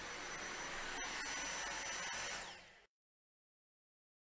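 Dyson V6 cordless vacuum with its Digital Motor V6, used as a handheld with a crevice tool: a steady rush of suction with a thin high whine. It fades out about two and a half seconds in and stops short of three seconds.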